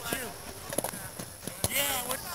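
Young men shouting and calling out across an open field during a game, with a louder yell near the end. A few sharp knocks or clicks are scattered through it.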